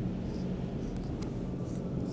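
Marker pen writing on a whiteboard, a few faint short squeaky strokes over a steady low room hum, with one light click in the middle.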